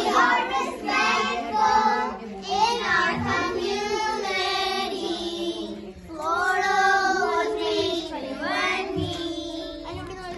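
A group of children singing a song together, with drawn-out sung notes.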